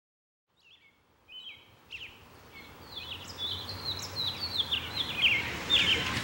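Birds chirping in a rapid series of short, falling calls over a low steady outdoor hum, fading in from silence and growing louder.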